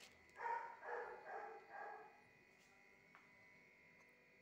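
An animal giving four short calls in quick succession, starting about half a second in.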